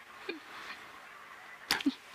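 Quiet room tone with the tail of a man's laugh: a short vocal sound just after the start, then a click and another brief vocal sound near the end.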